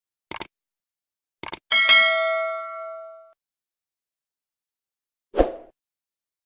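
Subscribe-button animation sound effects: two pairs of quick mouse-style clicks, then a bell ding that rings out and fades over about a second and a half, and a short pop near the end.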